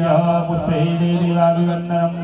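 Hindu Sanskrit mantra chanting by a voice held on a steady pitch, during a puja.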